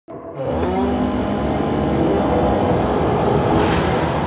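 Chainsaw engine revving up and running as it cuts through a tree limb, with a swell of rushing noise near the end.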